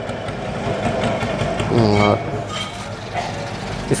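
Steady background noise with a brief voice about two seconds in.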